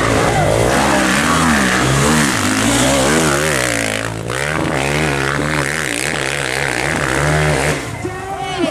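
Trail motorcycle engine revving up and easing off over and over, its pitch rising and falling about twice a second, with a brief drop about four seconds in.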